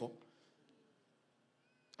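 Near silence in a pause of a man's speech through a PA microphone: his last word trails off in the first moment, then faint room tone, with one faint, brief high-pitched sound a little past halfway.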